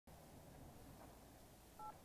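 Near silence with a faint low hum, then one short two-tone electronic beep near the end.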